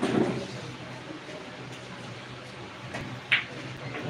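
Low crowd murmur in a pool hall, with one sharp click of pool balls about three seconds in as a shot is played.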